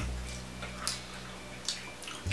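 A few soft mouth clicks and smacks from someone chewing a jelly bean, over a steady low hum.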